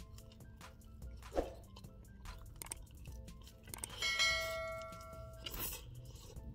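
A bell-like chime sound effect rings out about four seconds in and fades over a second or so, as a subscribe-bell graphic comes up. Faint background music and small chewing clicks sound under it.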